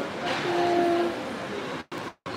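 Hubbub of a large indoor hall with a brief steady low hum-like tone under it, lasting under a second. Near the end the sound cuts out completely for a moment.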